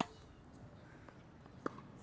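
Tennis ball struck off a racket strings: a single sharp pop about one and a half seconds in as the player hits a one-handed topspin backhand, preceded by a sharp click right at the start.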